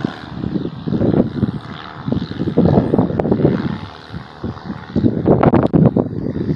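Wind buffeting the microphone in uneven gusts, with a few short knocks near the end.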